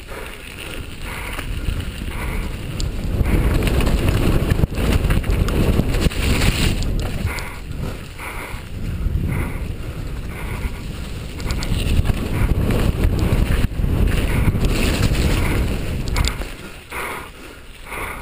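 Wind buffeting a helmet-mounted camera's microphone on a fast downhill mountain-bike run, under the noise of tyres through wet mud and puddles and the bike clattering over rocks and roots.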